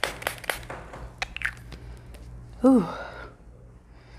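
Makeup setting spray being misted onto the face: several quick pumps of the spray bottle, short hissing puffs a few per second in the first second or so.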